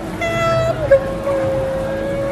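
A small child's voice singing long held notes: a short higher one, then after a small dip a longer steady one.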